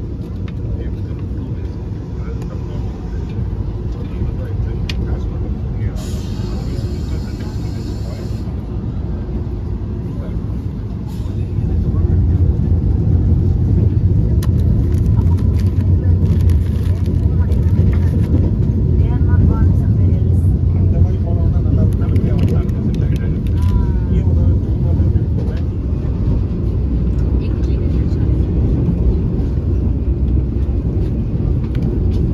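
Steady low rumble of a Vande Bharat Express electric train running at speed, heard from inside the coach, growing louder about twelve seconds in.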